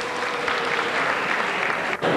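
Audience applauding, a dense steady clapping that cuts off suddenly at the end.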